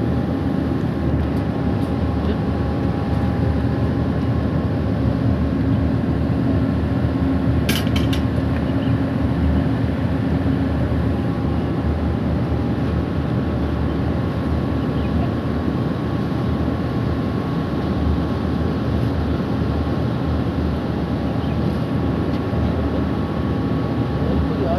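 Steady low mechanical rumble with a faint steady hum, like a machine running nearby, and a brief click about eight seconds in.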